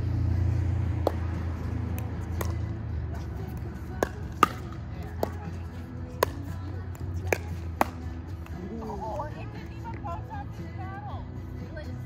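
Pickleball paddles hitting a plastic pickleball back and forth in a rally: about eight sharp pops at uneven spacing over the first eight seconds, the loudest near the middle.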